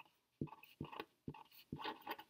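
Black felt-tip marker writing on a sheet of paper: a faint run of short scratching strokes, a few a second, each a new pen stroke of the lettering.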